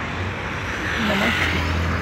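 Street traffic noise: a low steady engine hum with a vehicle passing, its noise swelling from about a second in. A brief voice is heard in the middle.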